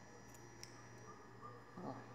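Near silence, with one faint snip of scissors cutting through cotton crochet string about half a second in, and a short faint voice sound near the end.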